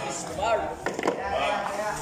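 Men talking, with a quick cluster of two or three sharp hard knocks about a second in.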